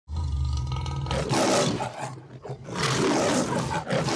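A lion roaring in two long bursts, about a second apart, after a low rumble in the first second.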